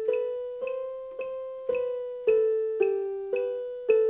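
Casio MA-150 electronic keyboard playing a slow, even melody of single piano-tone notes, about two a second, each note fading before the next.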